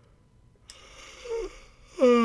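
Quiet pause in a man's close-miked voice recording: a click about two-thirds of a second in brings up a steady hiss, and shortly before the end he makes a brief, soft, low vocal sound, a short hum or breath.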